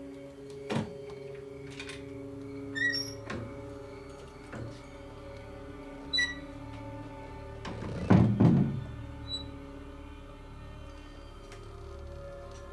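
A wooden front door being shut and locked by hand: scattered soft clicks and small metallic clinks, then the loudest thunks about eight seconds in, over a quiet film score of sustained held notes.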